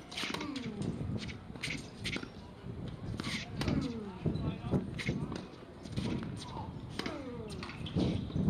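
Tennis balls being hit with rackets and bouncing on a hard court, heard as sharp pops scattered through the rally, with voices talking over them.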